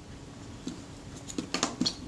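Handling noise from a stripped-down Rolleiflex Automat camera: a few light clicks and taps of small metal parts and tools, one about a third of the way in and a quick cluster in the last half-second.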